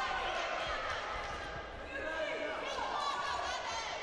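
Boxing crowd shouting, several voices calling out over one another, some calls held long.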